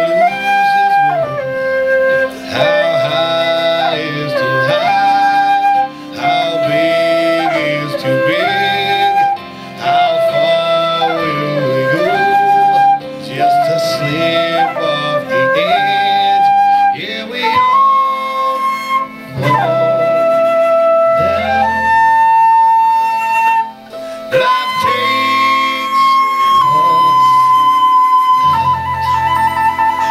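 Silver concert flute playing a slow melody with slides between notes over a recorded band accompaniment, moving to long held high notes in the second half.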